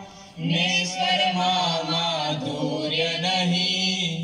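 Group of young voices singing a Gujarati devotional hymn of praise to the guru, with a harmonium holding notes beneath them. After a brief break at the very start, the singing resumes and runs on steadily.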